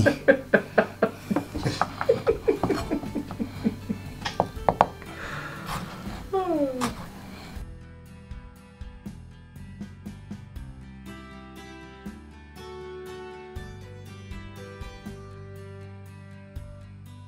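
A chef's knife chopping potatoes into small dice on a cutting board: quick, repeated chops, about three or four a second, with a laugh at the start. About halfway through, the chopping cuts off suddenly and background music takes over.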